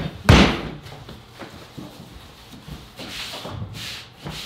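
Pizza dough being slammed and kneaded on a flour-covered folding table: one loud thud just after the start, then a few lighter knocks and some rubbing.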